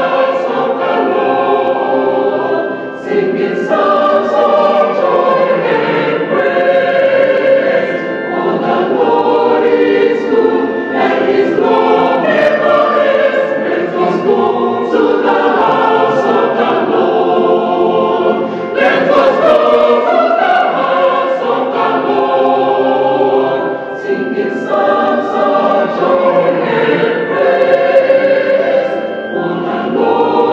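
Mixed church choir of women and men singing a hymn together, with short breaks between phrases.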